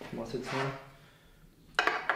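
Brief speech at the start, then a short metallic clink near the end as a bicycle crankset's axle is held up against a downhill frame's bottom bracket shell, test-fitting a crank that is too narrow for the frame.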